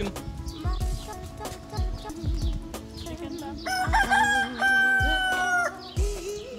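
A rooster crowing once, about four seconds in: one long call of about two seconds. Background music with a steady beat plays throughout.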